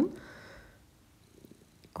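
A soft breath, then near quiet with a few faint clicks near the end as hard, cured epoxy resin coasters are handled.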